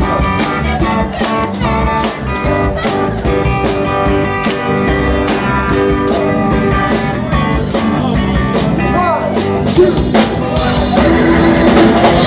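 Live band playing with electric guitar over a steady drum beat, getting a little louder near the end.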